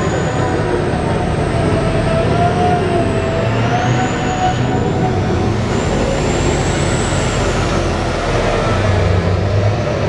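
BelAZ mining dump truck driving past close by: its engine running loud and steady, with a high whine that rises and falls.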